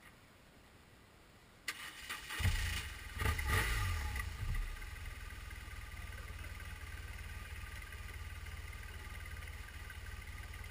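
Motorcycle engine started on its electric starter: a brief crank of under a second, then it catches, is blipped a few times and settles into a steady idle.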